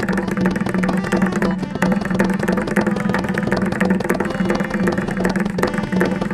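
Mridangam played in rapid, unbroken strokes in a Teentaal percussion ensemble, over a steady held note.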